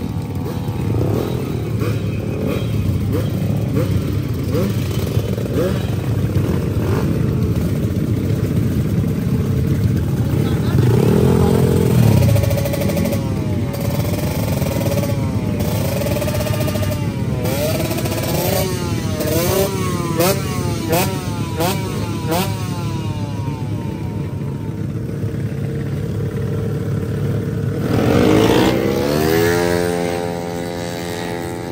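Modified Honda Vario drag scooter's single-cylinder engine running through an aftermarket slip-on exhaust, with the throttle blipped repeatedly so the pitch rises and falls over and over in the middle stretch. It revs up hard again near the end.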